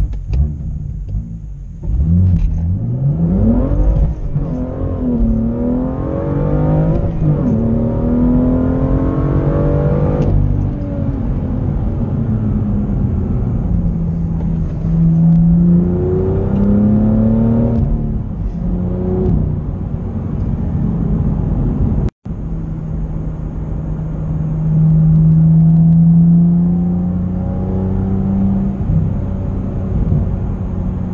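BMW M2's turbocharged straight-six heard from inside the cabin, accelerating hard: the engine note climbs in pitch, drops at an upshift and climbs again, then settles into a steadier drone that swells again near the end. The sound cuts out for a split second about two-thirds of the way through.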